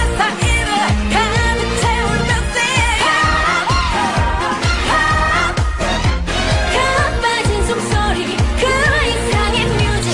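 K-pop dance track with female vocals over a steady, heavy beat.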